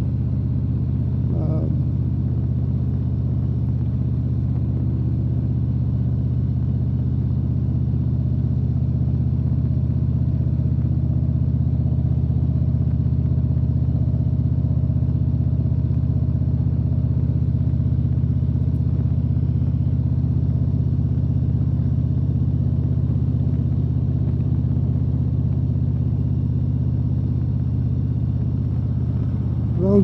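Touring motorcycle's engine running steadily at an even cruising speed, with road and wind noise, heard from the rider's seat.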